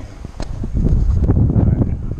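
Wind buffeting the camera's microphone in a loud, low rumble that swells to its peak in the middle, with a few sharp knocks from the camera being moved about.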